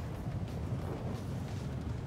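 Wind buffeting the microphone over choppy, wave-tossed water: a steady low rumble with a faint hiss above it and no separate knocks or splashes.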